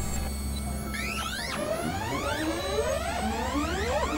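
Experimental electronic synthesizer music: a steady low drone, joined about a second in by a series of rising pitch sweeps, several overlapping, each climbing and then dropping back sharply to start again.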